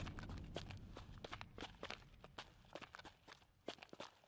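Footsteps of people walking in: an irregular run of light, sharp steps, faint, as the tail of the music score dies away in the first second.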